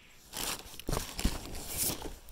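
Rustling and crunching handling noises with a few sharp knocks, starting about a third of a second in, from someone moving about beside a plastic-wrapped lumber pallet.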